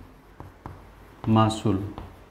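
Chalk writing on a blackboard: a run of light taps and clicks as the chalk strikes and moves on the board. A short spoken word breaks in about a second and a half in.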